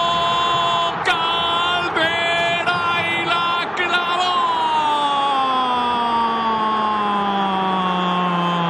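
Football commentator's drawn-out goal cry: a run of short held shouts, then one long held note that slowly falls in pitch for about five seconds, with stadium crowd noise underneath.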